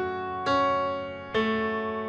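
Pianoteq software piano playing a slow arpeggio. Single notes are struck about a second apart, two of them in this stretch, and each one rings on under the next.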